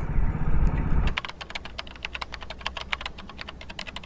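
Low wind and road rumble from riding on a motorcycle cuts off about a second in. It is followed by a fast, irregular run of computer-keyboard typing clicks, a typing sound effect played over the text end card.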